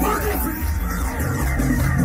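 Loud live music through a festival sound system, carried by a heavy, pulsing bass beat.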